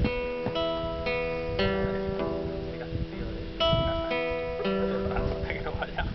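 Guitar picked one note at a time in a slow arpeggio, about two notes a second, each note left ringing, with a short pause about halfway through.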